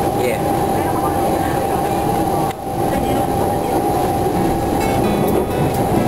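Singapore MRT train running, heard from inside the carriage: a steady rumble of wheels on rail with a steady whine over it.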